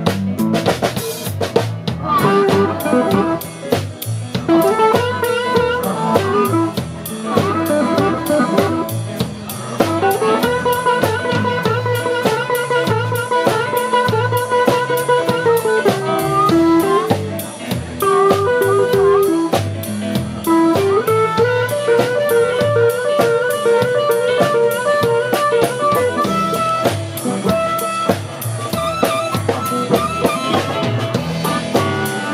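Live blues band playing an instrumental passage: long held, bending melody notes, typical of a harmonica, over acoustic guitar, upright bass and a drum kit.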